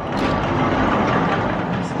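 A sliding horse-stall door rolling open on its track, a steady rumble lasting about two seconds.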